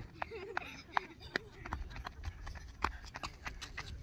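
Footsteps of children running on a sandy dirt trail: an uneven series of short, sharp steps, with faint voices in the background.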